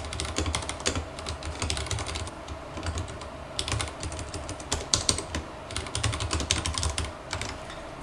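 Typing on a Vortex Race 3 mechanical keyboard: quick runs of key clicks in bursts, with short pauses between them.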